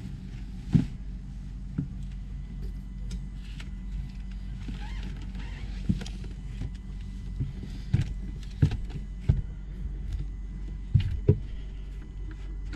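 A steady low hum runs throughout, with scattered sharp knocks and bumps that come closer together after about eight seconds.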